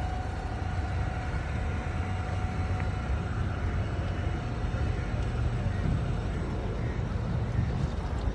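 Steady low rumble of a small abra boat under way on a calm canal, with a faint steady whine running through it.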